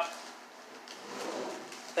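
Plastic poly mailer bag crinkling faintly as it is handled, with a few light ticks about a second in, under a quiet drawn-out 'uh' from the man.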